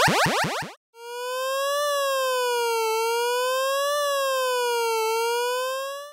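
The tail of a fast run of falling electronic sweeps ends within the first second. A synthesized wailing siren then starts: one clean electronic tone rising and falling smoothly, about once every two seconds.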